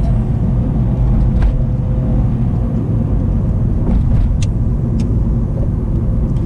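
Car engine and road noise heard from inside the cabin while driving: a steady low rumble, with a few faint short clicks.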